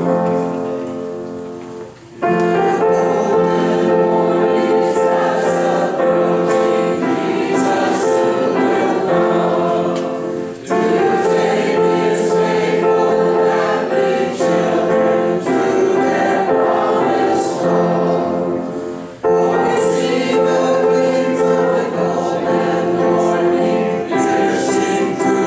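Congregation singing a hymn together with piano accompaniment. The singing pauses briefly between lines, about two, eleven and nineteen seconds in.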